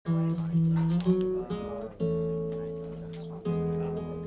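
Guitar playing a slow pattern of picked chords, each chord left ringing and changing every second or so.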